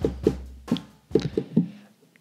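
Short electronic drum beat with a bass note, triggered from the pads of a sampler controller: quick hits, about four a second, that thin out and stop about a second and a half in.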